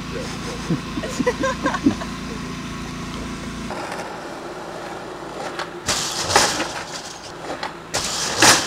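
Voices talking faintly over a steady low hum, which stops abruptly about two-thirds of the way through. A skateboard on a smooth indoor floor follows, with two short, loud scraping clatters from the board near the end.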